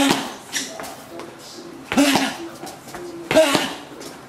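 A man's short, sharp shouts, karate kiai, timed with his punches: three of them, at the start, about two seconds in and about three and a half seconds in.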